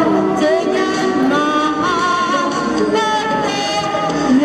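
A woman singing into a handheld microphone, amplified, holding notes and sliding between pitches.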